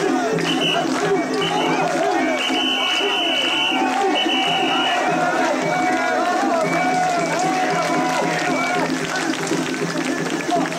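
Mikoshi bearers' crowd shouting and chanting together as the portable shrine is carried and jostled. Two long, shrill whistle blasts sound a couple of seconds in, one after another.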